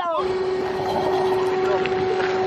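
Steady mechanical hum with one constant pitch, starting suddenly just after the start. It is most likely the hydraulic pump of the enclosed car-transporter trailer, working its rear door or ramp.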